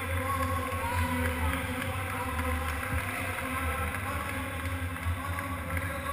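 Steady low rumble of room or microphone noise, with faint distant voices murmuring over it.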